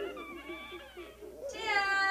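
A voice making high, animal-like cries for the stage puppets. The cries waver up and down, then give way to one long, high, held cry from about a second and a half in.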